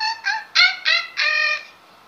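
A girl's voice making about five short, very high-pitched squeaky syllables with no clear words, the last one held longest, then stopping about a second and a half in.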